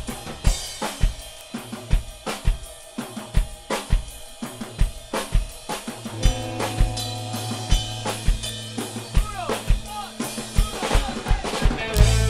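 Live rock drum kit playing a steady driving beat on kick and snare as a song's intro. About halfway through, held low notes from the band's stringed instruments come in over the drums.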